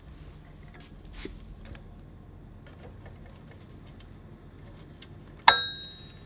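Faint clicks of metal parts being handled as a belt and pulley are fitted on a go-kart torque converter, then one sharp metallic clink that rings briefly near the end.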